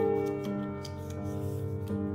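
Slow background piano music: sustained chords ringing on, a new chord struck near the end, with faint light clicks over them.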